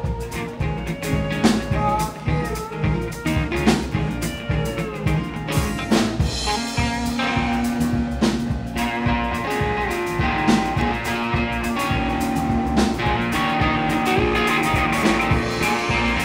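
Live rock band playing an instrumental passage between sung lines: drum kit keeping a steady beat under electric bass and strummed acoustic guitar, with a gliding lead line over the top.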